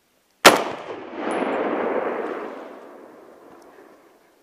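A single hunting-rifle shot fired at a wild boar, a sharp crack about half a second in, followed by its echo rolling back and fading over about two seconds. The shot hits the boar in the shoulder and drops it on the spot.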